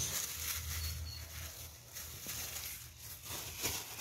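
Quiet outdoor ambience with faint rustling and small clicks of kitchen scraps in a cut-off plastic bottle being worked with a stick, and two short high chirps about a second in.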